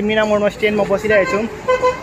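A man talking close to the microphone.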